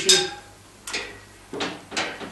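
Four sharp metal clinks, one with a brief ring, from the weight stack and cable fittings of a low-pulley cable machine as the weight is set.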